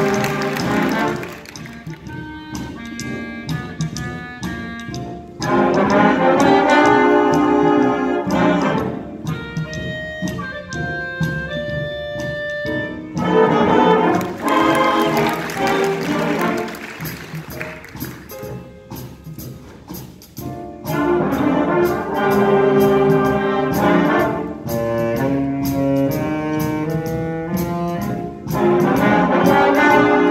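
Youth concert band of saxophones and brass playing a piece: loud passages for the full band alternate with quieter stretches where a few instruments hold single notes.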